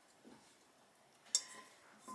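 A single light metallic clink about one and a half seconds in, with a short faint ring, from the stainless pot and metal spoon used to scrape out the raspberry pulp being handled; otherwise only a soft tick.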